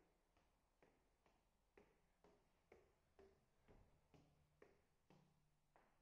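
Faint footsteps climbing stairs with wooden treads, a steady series of about two steps a second.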